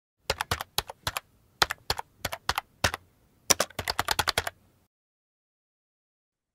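Keyboard keys typed in quick, uneven bursts, about two dozen sharp clicks. The typing stops a little before the end.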